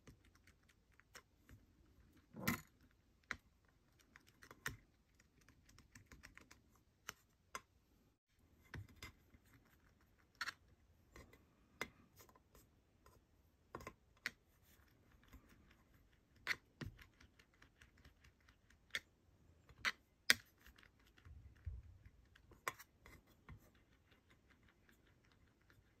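Faint, irregular light clicks and taps of a clear acrylic plate against a hard work surface as polymer clay rods are rolled under it. There is a slightly louder knock a couple of seconds in.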